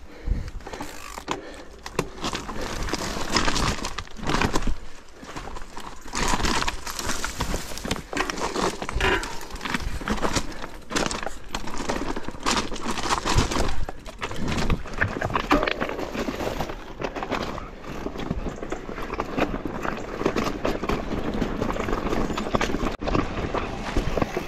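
Mountain bike rolling down a loose, rocky trail: tyres crunching and clattering over stones, with constant irregular knocks and rattles from the bike.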